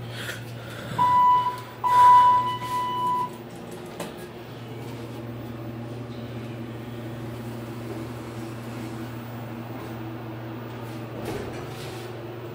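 Elevator car's electronic signal beeping twice at one steady pitch, a short beep then a longer one, over a steady low hum. A single sharp click sounds about four seconds in.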